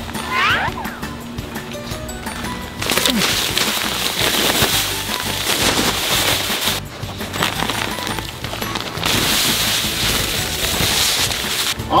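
Sand pouring out of a bag into a wooden sandbox in two long hissing rushes, the first starting about three seconds in and the second about nine seconds in, over steady background music.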